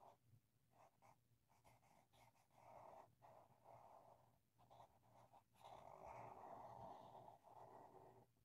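Near silence, with faint rubbing of a felt-tip permanent marker on paper in short, irregular strokes as lines are inked over and filled in. The longest stroke comes about six seconds in.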